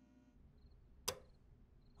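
A single sharp click of a wall light switch being flipped off, about a second in, with near silence around it.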